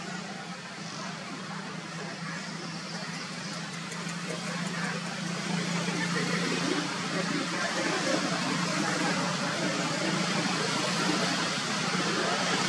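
A steady low motor-like hum under a hiss of background noise, getting somewhat louder about halfway through.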